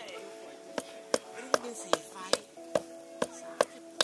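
A mallet driving a steel tent peg into the ground, about eight sharp, evenly spaced blows at roughly two and a half a second, over steady background music.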